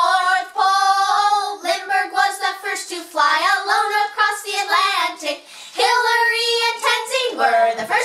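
A woman and children singing together, quick sung words broken by a few held notes.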